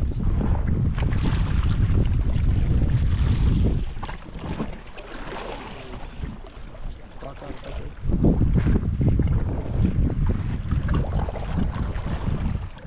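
Wind buffeting the microphone on a small boat at sea, with the wash of the water underneath. The wind noise drops for a few seconds in the middle, then picks up again.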